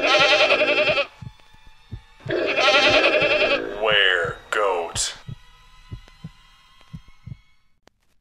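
Goat bleating: two long, loud, wavering bleats, then two shorter falling cries about four and five seconds in. Under them runs a low heartbeat-like thumping that fades out toward the end.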